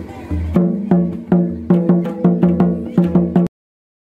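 Tumdak, a cane-laced barrel drum, played with the bare hand in a quick rhythm. Deep ringing bass strokes mix with higher pitched strokes, and the playing cuts off suddenly about three and a half seconds in.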